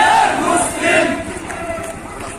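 Crowd of protest marchers shouting slogans together, with a loud shout right at the start and another about a second in.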